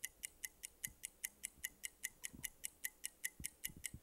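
Game-show countdown timer sound effect: short, even, clock-like ticks, about five a second, marking the contestants' answer time running out.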